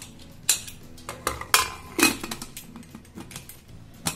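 Metal pressure-cooker lid being fitted onto the cooker pot and closed: a run of sharp metal clanks and clinks, the loudest about half a second, one and a half and two seconds in, then smaller taps.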